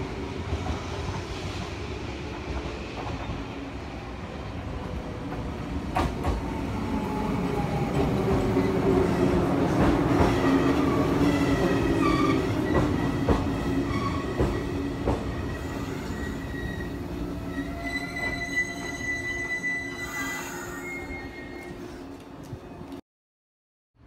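Shinano Railway 115-series electric train arriving at a platform, its cars rolling past and slowing to a stop. The running noise swells and then eases as it slows, and a steady high brake squeal sets in during the second half, strongest a few seconds before the end.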